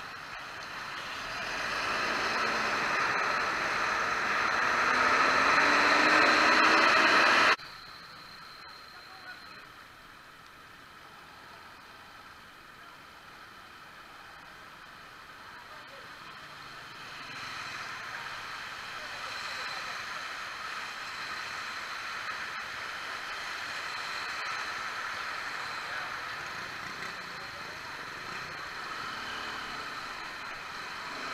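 Motorcycle engine and riding noise. The engine revs up, rising in pitch, and the noise grows loud for the first several seconds, then cuts off suddenly to a quieter steady noise that grows louder again about halfway through.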